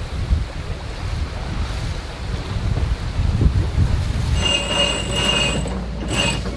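Wind rumbling on the microphone and sea water rushing past a sailing yacht under way in choppy water. A little past four seconds in, a steady high-pitched squeal sets in on top.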